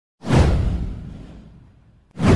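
A whoosh sound effect for an intro animation. It starts suddenly just after the beginning, sweeps down from high to low pitch over a deep rumble, and fades out over about a second and a half.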